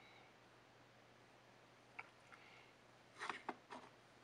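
Near silence: faint room tone with a single sharp click about halfway through and a short run of light clicks and rattles near the end.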